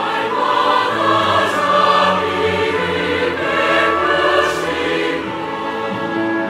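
Large mixed choir of men and women singing a Korean hymn in sustained, held chords.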